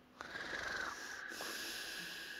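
Sound-system hiss with a steady high whistling tone, cutting in suddenly about a quarter second in and holding steady.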